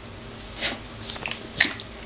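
A cocker spaniel and a dachshund play-fighting, with three short, sharp sounds from the scuffle in two seconds, the last the loudest.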